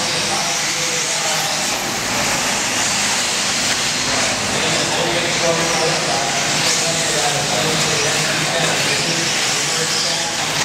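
Electric 1/8-scale RC buggies racing on an indoor dirt track: a steady wash of motor whine and tyre noise, with a few rising and falling whines. Voices carry through the hall behind it.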